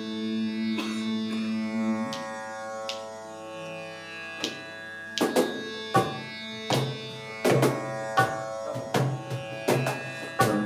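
Indian fusion jam: a sustained, many-toned drone, joined about four seconds in by hand-percussion strikes that grow quicker and denser towards the end.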